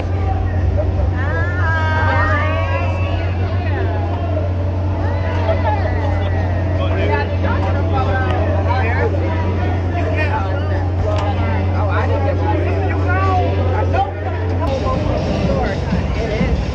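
A parked motorhome's engine running with a steady low hum under several people talking at once; the hum stops near the end.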